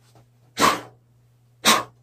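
Two short, sharp puffs of breath blowing sawdust out of the hollow inside of a turned wooden birdhouse, about a second apart. A low steady hum runs under them.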